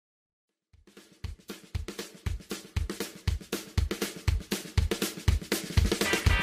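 Drum-kit intro of a song: after a brief silence a steady beat starts, bass drum about twice a second with hi-hat and snare strokes between, growing louder.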